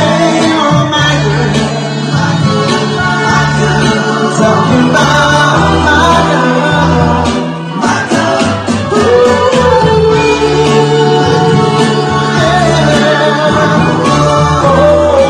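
A singer performing a song over instrumental backing with a steady bass line, holding one long note about two-thirds of the way through.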